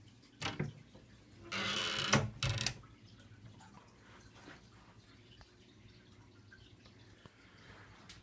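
Handling noises over a low steady hum: a short knock, then a scraping sound lasting under a second, with a sharp click and a couple of clatters straight after.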